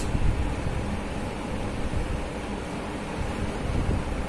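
Steady background noise: an even hiss with a low, fluctuating rumble.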